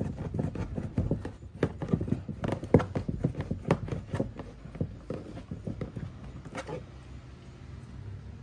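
Hand Phillips screwdriver driving a screw into a plastic door-panel armrest: a run of irregular clicks and creaks that thins out after about five seconds.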